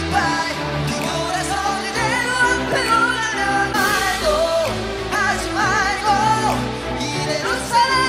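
K-pop song performed live on stage, with male group vocals sung over a pop backing track that has a steady bass and beat.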